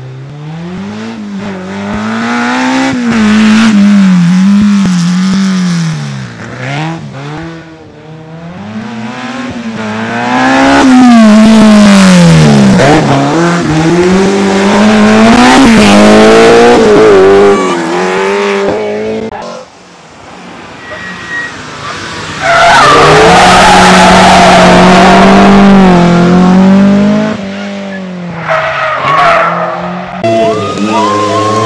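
Rally car engines revving hard as the cars pass at speed, the engine note climbing and dropping over and over through gear changes and lifts. Near the end comes a long, very loud stretch that holds one high engine note for about three seconds before falling away.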